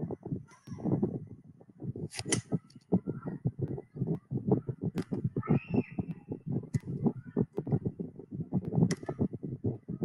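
Close handling noise from a hand rubbing and tapping at a webcam and microphone: irregular scraping, rustling and sharp clicks. A brief high squeak comes a little past halfway.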